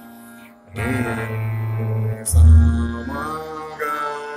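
Male Hindustani classical vocalist singing a slow, gliding phrase of raag Bihag over a steady tanpura-like drone, the voice entering under a second in after a pause with only the drone. A deep low thump comes a little past halfway, the loudest moment.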